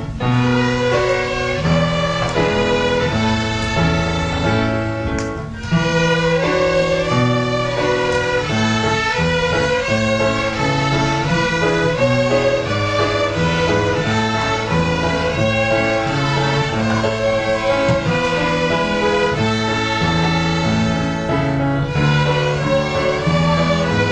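A children's ensemble of violins with classical guitars playing a tune together. There is a short break in the playing about five seconds in, and then it comes back louder.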